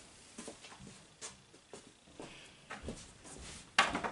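Faint taps and rustles of wooden easel pieces being handled, then a sharper click of wood shortly before the end.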